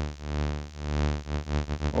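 Serge modular synthesizer tone held at a steady low pitch, its volume swelling and dipping several times: a tremolo made by a slow control voltage sweeping a voltage-controlled crossfader between the signal and its phase-inverted copy.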